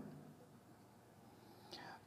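Near silence: faint room tone in a pause in speech, with the voice trailing off at the start and a brief faint sound, like a breath, near the end.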